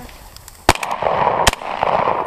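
Two shotgun shots a little under a second apart, each a sharp crack, the first the louder.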